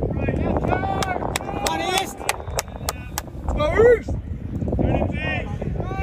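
Shouts and calls of soccer players carrying across an open field. The loudest is a rising yell about four seconds in. A low rumble runs underneath, and a quick run of sharp clicks comes in the middle.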